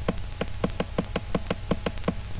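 A computer mouse scroll wheel ratcheting as the page is scrolled down, giving about a dozen quick, evenly spaced clicks, roughly six a second. A steady low hum runs underneath.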